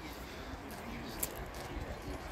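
Faint open-air background noise: a low, even rumble with one soft tap a little past a second in.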